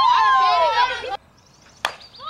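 High, gliding voices calling out loudly over one another, cut off abruptly about a second in. Near the end comes a single sharp crack.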